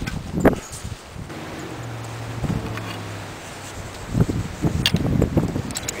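Threaded galvanized steel pipe fittings being unscrewed with a pipe wrench: handling and rustling noise with sharp metallic clicks, one about five seconds in. A low steady hum runs for a couple of seconds in the middle.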